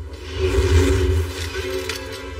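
Film score with the rumble of a missile launching, which swells about half a second in and then eases off.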